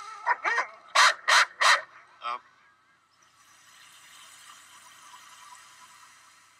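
Dogs barking three times in quick succession, then one falling cry, followed by a faint steady hiss.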